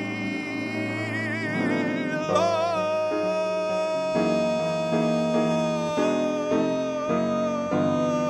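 A man singing over his own piano accompaniment: the voice, with vibrato, settles about two seconds in onto one long held note, while the piano strikes repeated chords under it.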